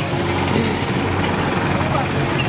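Steady roadside traffic noise, with passing vehicles making a continuous rushing hum and faint voices mixed in.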